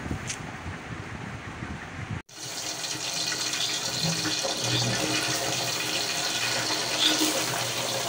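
Hot oil with whole spices sizzling steadily in an aluminium cooking pot on a stove, starting abruptly about two seconds in after a short stretch of low room noise.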